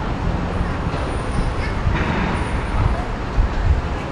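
Steady road traffic: cars driving along the street below, a continuous low rumble and tyre noise, with a faint high whine heard twice in the middle.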